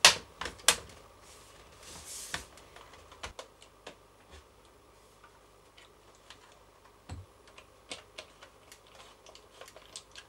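Hands fitting the bottom cover onto an iMac G4's dome base: a few sharp knocks and clicks in the first second, a short rustle, then scattered light clicks and taps of small parts and a screw, with one dull knock about seven seconds in.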